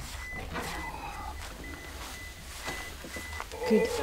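A parked van's warning chime, a soft high beep repeating about twice a second, sounding while the driver's door stands open, over a low rumble.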